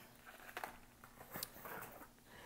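Faint handling noise: a few light clicks and knocks as small objects are moved about by hand, over low room tone.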